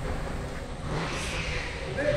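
Go-kart engines running on an indoor kart track, a steady rumble with a rush of noise that swells and fades about a second in as a kart passes.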